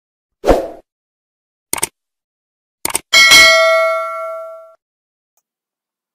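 A dull thump, two quick double clicks, then a bell-like ding about three seconds in that rings out and fades over a second and a half.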